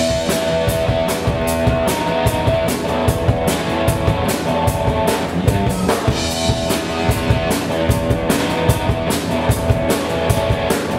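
Live rock band playing an instrumental intro: a drum kit keeping a steady beat under electric guitars.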